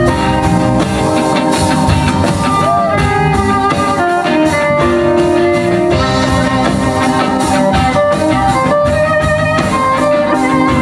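Live band playing an instrumental passage: a bowed violin melody over strummed small guitars and a drum kit, with one sliding note about three seconds in.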